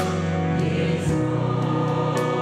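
Church choir singing a hymn in sustained chords, accompanied by organ, piano and drums, with light regular cymbal strokes and a short cymbal swell about half a second in.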